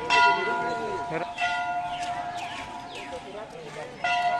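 A temple bell struck once, its metallic ring fading slowly, then struck again right at the end. Voices of people mingle in the background.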